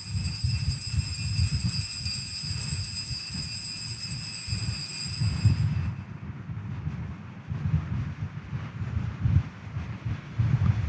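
Altar bells ringing at the elevation of the consecrated host, a sustained high ringing that dies away about halfway through, over a low rumble.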